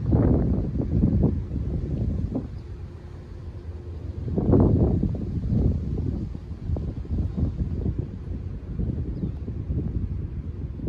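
Wind buffeting the microphone, a low rumble that surges in two strong gusts, one at the start and one about halfway through.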